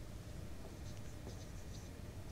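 Whiteboard marker writing on a whiteboard: faint, short scratchy strokes as letters are drawn.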